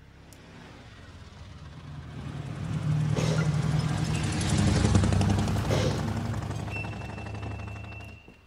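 Small motorcycle engine passing by: it grows louder as it approaches, is loudest in the middle and fades away near the end.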